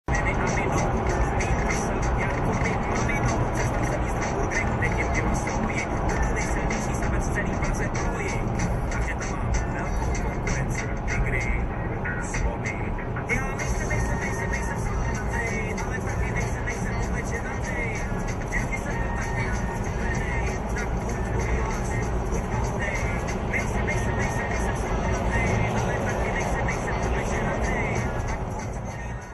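Background music with a singing voice, played loud and steady.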